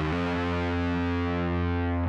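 Distorted electric guitar in C standard tuning letting a low note on the sixth string ring for about two seconds, then cut off sharply. This is the ending of a doom-metal riff.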